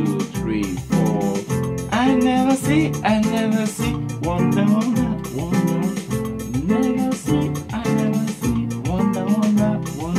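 Yamaha PSR-630 electronic keyboard playing a highlife chord groove in F, with chords re-struck roughly every second.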